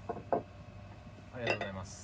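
A ceramic serving plate knocks twice on a wooden counter as it is set down, followed by a short vocal sound about a second and a half in.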